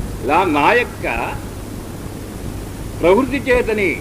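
A man speaking Telugu in two short phrases with a pause between, over a steady background hiss.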